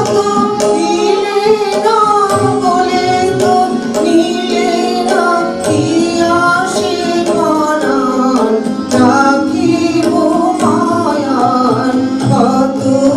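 Female vocals singing a Bengali song, accompanied by a harmonium's sustained reed chords, tabla and light hand percussion.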